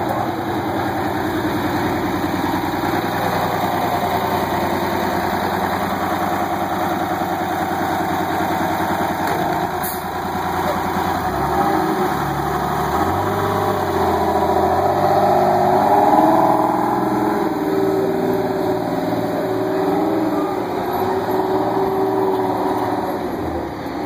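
Crown Supercoach Series 2 school bus's rear engine running as the bus pulls away, its pitch stepping up and down about halfway through and loudest a few seconds after that.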